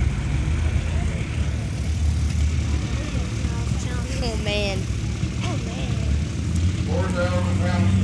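Farm tractor engine running steadily with a low, even hum, under nearby people's conversation.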